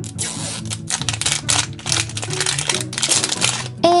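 Crinkly plastic wrap being peeled off a plastic toy capsule ball and the ball pulled open, a dense run of rapid crackling. Soft background music plays underneath.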